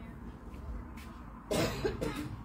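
A person coughing, two quick coughs about one and a half seconds in, over faint low background noise.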